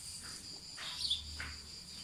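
Crickets trilling steadily, a thin high continuous sound, with a short falling chirp about a second in.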